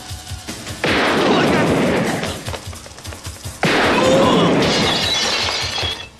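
Two long bursts of automatic gunfire from a film soundtrack, the first starting about a second in and the second about three and a half seconds in, each cutting in suddenly. Action-scene music with a pounding beat runs beneath.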